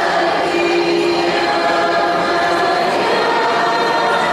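A choir singing a slow liturgical chant during communion, with long held notes.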